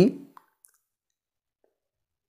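The last syllable of a man's spoken word trails off at the start, then near silence with a few very faint, tiny clicks.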